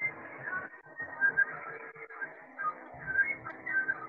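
A quick string of short, high whistle-like notes that jump between pitches, over a steady lower hum. The sound is thin and cut off at the top, as heard through a video call's audio.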